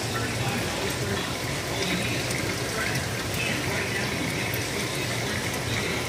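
Aquarium filtration running: steady water flow with a low pump hum from the saltwater display tanks.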